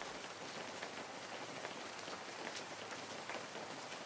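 Faint, steady rain sound effect: an even hiss of rainfall with many small, scattered drop ticks.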